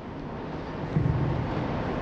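Low rumbling noise on the microphone between sentences, growing louder about a second in.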